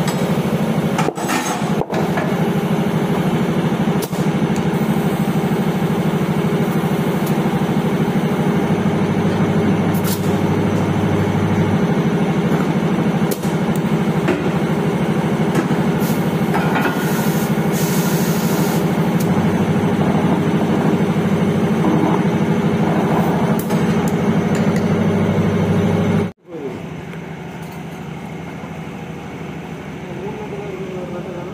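Steady machine drone of a running air compressor, with air hissing through the hose chuck as a scooter tyre is inflated. A sharper hiss comes briefly near the middle, and the sound cuts off suddenly shortly before the end.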